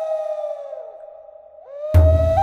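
Background music led by a flute-like wind instrument. A held note fades and bends down about a second in. A new note slides up, and a deep bass hit comes in near the end as the tune picks up again.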